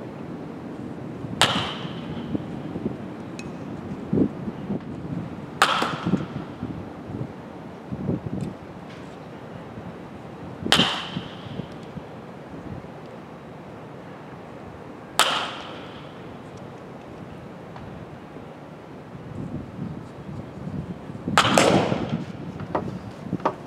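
Baseball bat hitting pitched balls in batting practice: five sharp cracks about four to five seconds apart, each with a brief ring, with duller thuds between them.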